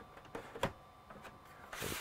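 Faint handling of a plastic battery pack at a portable power station's battery slot: a light click about two-thirds of a second in, a few small ticks, then a soft rushing noise near the end.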